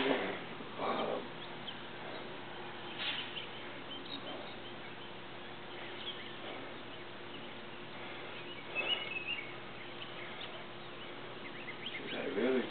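Quiet outdoor background with a faint steady hum and a few brief, faint bird chirps, the clearest about nine seconds in.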